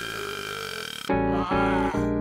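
A cartoon vomiting sound effect, a gushing, belching retch, fading out about a second in. A keyboard music cue with steady chords then starts.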